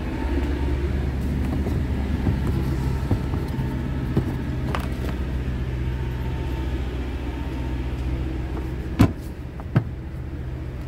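DAF CF tipper's diesel engine idling steadily, with a light click about halfway through and two sharp knocks near the end as the toolbox lid is shut.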